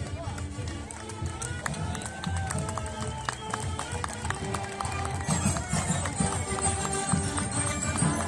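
Marching band with saxophones and percussion playing as it passes, growing louder about five seconds in, with onlookers' voices close by.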